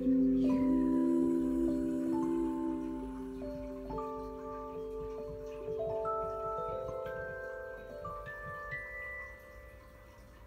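Piano playing the closing bars of a slow ballad: held low chords under single high notes that step upward one by one, the sound fading away toward the end.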